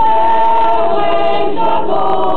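A choir singing the town's anthem in Catalan, unaccompanied: a held chord, then the voices move to a new chord about one and a half seconds in.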